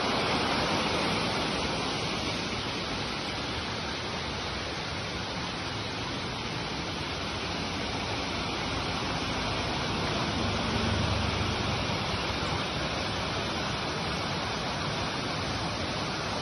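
Steady rush of water from a small waterfall and a rocky hill stream, an even hiss with no break.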